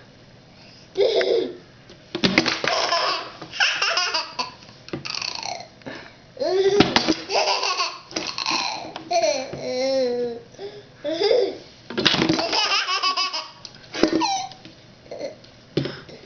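A baby laughing in repeated fits of giggles and belly laughs, with a few short knocks from a plastic ketchup bottle tipping over onto the table.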